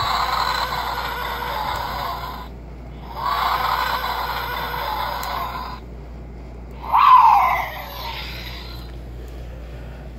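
Jurassic World React Attack Spinosaurus toy playing its electronic roar sounds: two long roars of about two and a half seconds each, then a shorter, louder roar about seven seconds in that falls in pitch.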